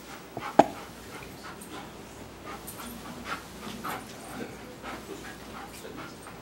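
A dog whimpering in short, scattered cries, with one sharper, louder sound about half a second in.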